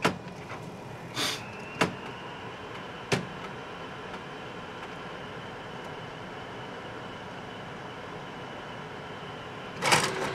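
Canon imagePROGRAF PRO-1000 photo printer working slowly through its paper-feed cycle: a few sharp mechanical clicks and a short hiss in the first three seconds, then a faint steady high whine, with more clicks at the very end. The printer is retrying its pick-up of the card stock after failing to grab the sheet.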